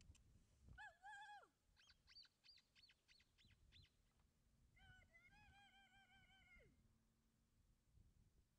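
Faint bird calls. There is a drawn-out wavering call about a second in, then a quick run of about ten high chirps, then a second, longer wavering call that drops off at its end.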